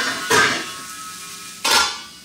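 Kitchen clatter close by: three sharp knocks of metal cookware and utensils, each followed by a short metallic ring.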